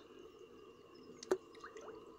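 Shallow stream water dripping and trickling faintly, with a few small plinks and one sharp click a little past the middle.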